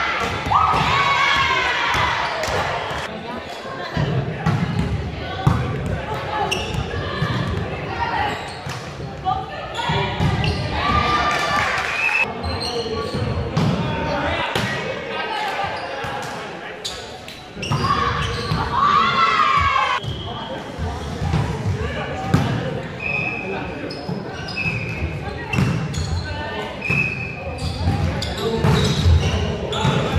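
Volleyball rally in a gym: repeated sharp slaps of the ball off players' arms and hands, with shouted calls between players, echoing in the large hall.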